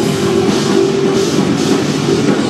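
Psychedelic rock band playing live and loud: electric guitar, keyboard and a drum kit with sustained low tones and cymbals washing over the top.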